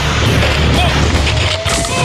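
Background rock music over the rushing scrape of a snowboard on snow, heard through a helmet camera; the music's bass drops out near the end as the rider goes down into the snow.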